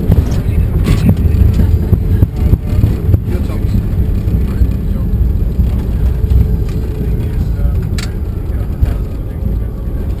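Cockpit noise of a Bombardier Challenger 605 business jet on its landing rollout: a loud, deep rumble from the engines and the runway that sets in suddenly and slowly eases as the jet slows. Sharp clicks come about a second in and again near the end.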